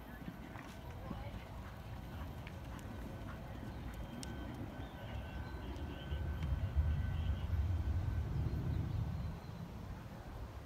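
A horse's hoofbeats cantering on soft arena dirt, a dull irregular thudding that gets louder from about six seconds in and drops back near the end.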